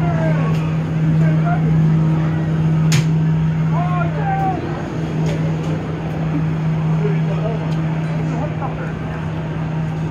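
Steady low machine hum, with distant voices over it and a sharp click about three seconds in.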